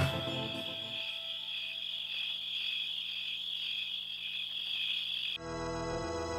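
A steady chorus of crickets chirping, a night-time ambience. About five seconds in it cuts to soft music.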